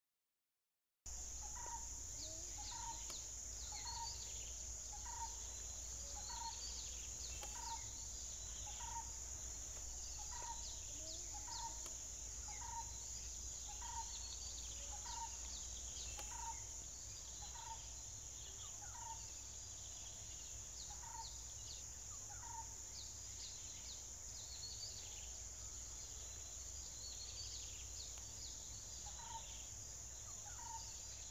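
Forest ambience: a steady high insect drone, with a bird repeating a short note about every 0.7 seconds and other birds chirping. It starts about a second in after a brief silence, and the repeated note pauses for several seconds late on.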